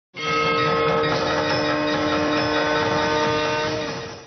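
A loud, sustained droning tone with many overtones over a low rumble, held steady from just after the start and easing off near the end: the programme's opening title sound.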